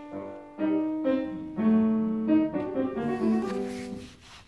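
Grand piano played live: slow, held notes and chords entering one after another, ringing on and dying away near the end.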